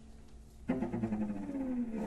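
String quartet playing live: after a brief quiet pause, the strings come in sharply together about two-thirds of a second in, with a low line sliding steadily down in pitch under the chord.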